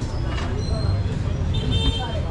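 Busy street-market ambience: distant voices chattering over a steady low traffic rumble.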